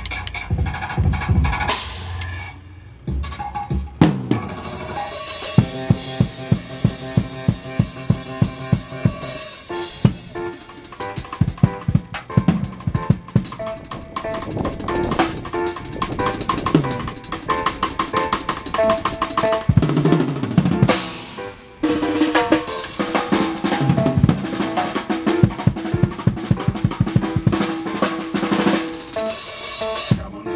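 Acoustic drum kit played fast and hard, with snare rolls, tom fills, cymbals and kick drum in quick rhythmic runs. The playing drops away briefly about three seconds in and again about twenty-one seconds in, then comes back in hard.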